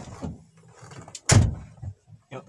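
Car door of a Kia Rio hatchback shut with one heavy thud about a second and a half in, after shuffling sounds of someone getting into the driver's seat; a small click follows near the end.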